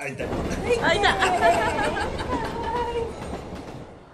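A babble of several voices talking over one another, with no single clear speaker, starting abruptly and fading toward the end.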